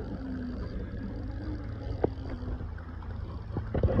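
Wind buffeting a phone microphone as a steady low rumble, with one sharp click about halfway through and a short laugh at the very end.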